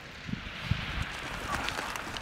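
The echo of a machine-gun burst dying away across an open range, with a few low, dull thuds.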